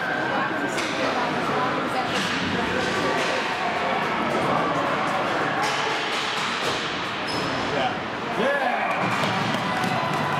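Ice hockey play in an indoor rink: people talking in the stands over repeated sharp clacks and knocks of sticks and puck, and thuds against the boards, in a large echoing hall.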